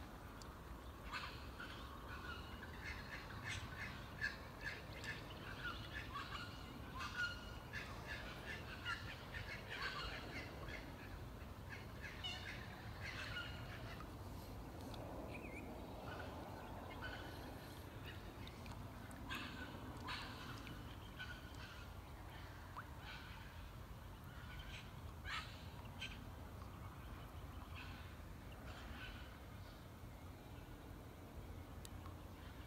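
Wild birds calling from the riverside trees: a busy run of short, repeated chirps and calls over the first dozen seconds, thinning out to scattered calls later. A steady low rumble sits underneath.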